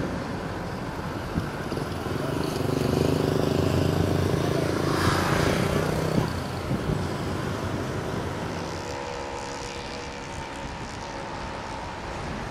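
Road traffic: a vehicle engine running close by, with one vehicle passing about five seconds in, then quieter street noise after a sudden drop about six seconds in.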